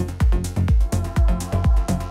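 Melodic techno played from vinyl in a DJ mix: a steady four-on-the-floor kick drum at about two beats a second under held synth chords.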